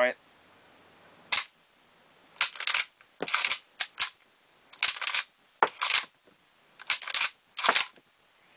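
Mosin-Nagant bolt action being worked by hand to chamber cartridges from the magazine: repeated short metallic clacks and slides as the bolt handle is lifted, drawn back, pushed forward and turned down, in about nine quick bursts. The extractor has been polished to ease it over the cartridge rims, and the bolt runs fairly smoothly.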